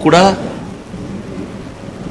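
A man says one word at the start, then a steady rumbling background noise with hiss, the room noise of a crowded press briefing picked up through close news microphones.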